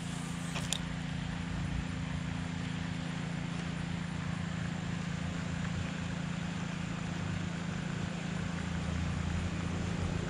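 Steady rush of a pond's spray fountain running, over a low steady hum, with one short click near the start.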